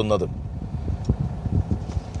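A man's voice ends a word, then a low, uneven background rumble fills the pause.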